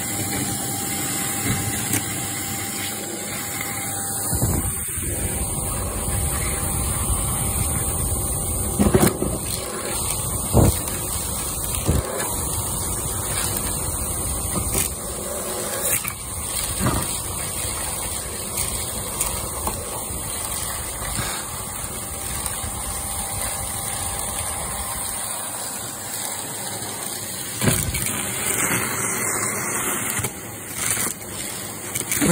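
Shark DuoClean upright vacuum cleaner running steadily, its wand sucking debris out through the collar of a Hetty vacuum bag, with occasional sharp clicks as bits rattle up the wand.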